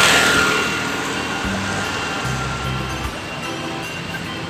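Music with a bass line changing note every second or so, over street noise. A vehicle passes close by at the start, its noise fading away over about a second.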